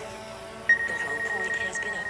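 DJI Mavic Air 2 drone's propellers running as it lifts off on auto takeoff and hovers low. Under a second in, a steady high warning tone starts: the obstacle-avoidance sensors alerting that they are sensing the person standing right behind the drone.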